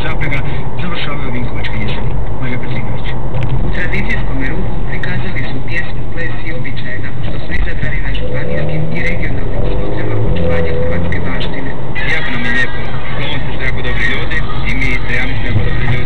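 Car interior noise while driving: a steady low engine and road rumble, with indistinct talking from the car radio underneath.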